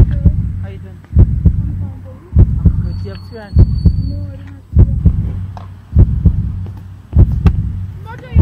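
Heartbeat sound effect: deep double thumps, lub-dub, about every 1.2 seconds, seven times, with faint voices under them.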